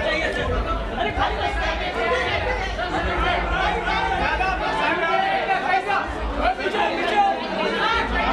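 Several people talking over one another close by, in indistinct overlapping chatter.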